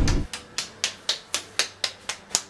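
Tortilla dough being patted flat between the palms by hand: a quick, even run of light slaps, about four a second. A brief low rumble cuts off just after the start.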